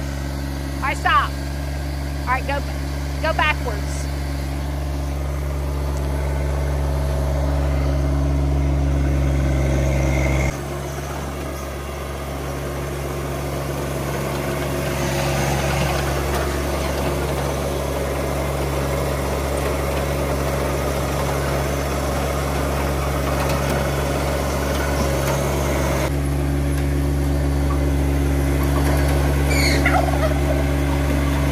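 John Deere sub-compact tractor's three-cylinder diesel engine running steadily while the loader works and the tractor drives. Its hum changes suddenly about ten seconds in.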